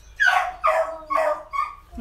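A dog barking four short, high barks about half a second apart, each falling in pitch.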